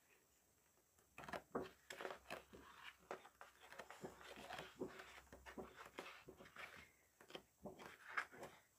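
Faint rustling and light ticks of paper sheets being turned one after another in a pad of scrapbook paper, starting about a second in.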